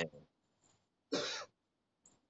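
A single short cough a little after a second in, following the tail end of a spoken word.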